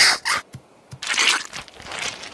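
Cartoon sound effects of sun cream being put on: a short squirt from a squeezed plastic bottle at the start, then, about a second in, a longer rubbing noise as the cream is rubbed onto skin.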